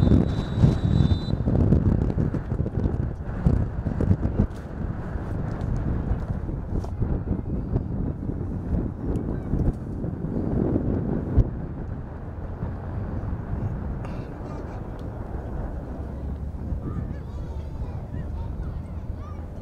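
A referee's whistle blown once for about a second at the start, awarding a penalty after a foul in the box. Voices shout and wind buffets the microphone, loudest in the first couple of seconds.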